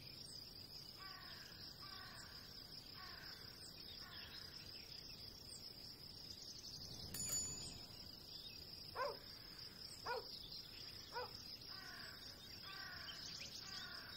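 Faint outdoor ambience: a steady high insect drone, short chirping bird calls repeating about once a second, and three caws about a second apart, typical of a crow.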